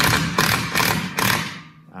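An impact tool with a socket hammering a nut tight on a carriage bolt, drawing the bolt head down into a plywood trailer deck. It rattles for about a second and a half, then stops.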